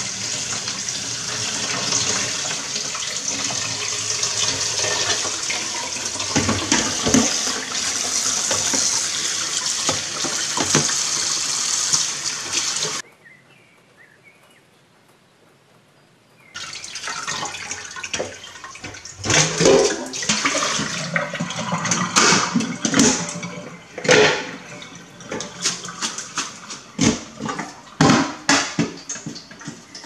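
Kitchen tap running steadily into a stainless steel sink, rinsing the seeds out of boiled chilies in a plastic colander. It cuts off suddenly about 13 seconds in. After a short quiet stretch come irregular wet knocks and splashes as the chilies are stirred in the colander with a wooden spoon.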